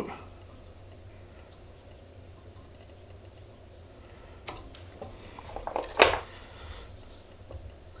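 Fly-tying scissors snipping off the excess goose biot ends at the hook shank: a sharp snip about halfway through, then a few quicker clicks ending in a louder snip about a second and a half later.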